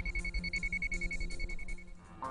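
News programme bumper jingle: a high electronic beep pulsing rapidly and evenly over a low synth line. It cuts off just before the end.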